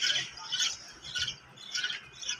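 Birds in a pigeon loft giving short, high chirping calls, four of them about half a second apart.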